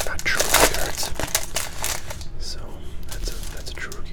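Cellophane wrapper of a baseball-card rack pack crinkling and crackling as cards are pulled out of it by hand. It is densest and loudest in the first two seconds, then turns into softer, sparser rustling.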